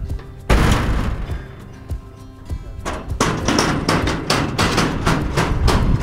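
A galvanised steel cattle-yard gate clangs shut about half a second in, the metal ringing and fading over about a second and a half. From about three seconds in come a run of lighter metallic knocks and rattles as the gate and its fittings are handled.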